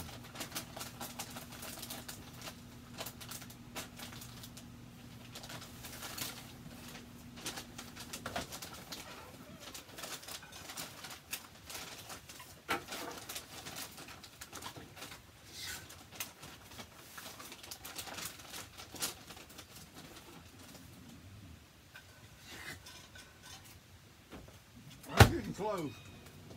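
Microwave oven running with a steady low hum that cuts off about eight seconds in. After that come faint handling sounds, then a single sharp knock near the end as the microwave door is shut.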